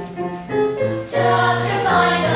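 A cast singing together with musical accompaniment. It swells louder about a second in and holds sustained notes.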